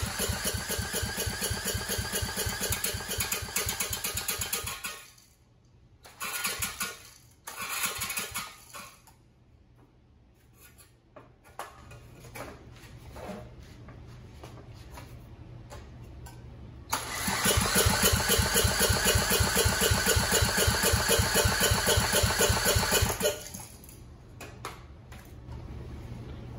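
10 hp Briggs & Stratton L-head engine being cranked over by a cordless drill on the flywheel nut during a compression test. It is a fast, even rhythm of compression strokes over the drill's whir, in two long runs of about five and six seconds with a couple of short bursts between. The gauge comes up to only about 30 psi, low compression that may call for lapping the valves.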